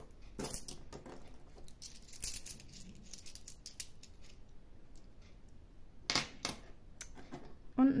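Euro coins clinking and clicking as they are picked from stacks and set down on a fabric mat: a sharp clink about half a second in, a run of lighter clicks around two to three seconds, and a few more clinks about six seconds in.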